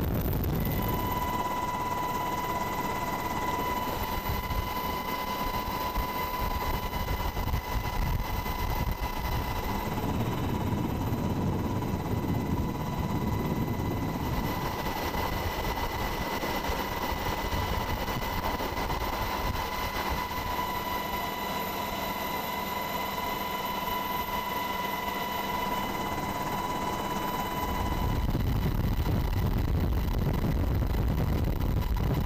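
UH-60 Black Hawk helicopter in flight, heard from its open cabin door: a dense low rotor and engine rumble with a steady high whine over it. Near the end the whine stops and the rumble gets louder.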